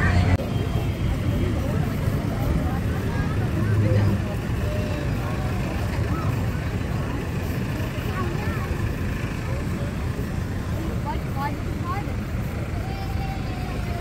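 Outdoor street ambience: a steady low rumble with a hiss of noise, and faint distant voices.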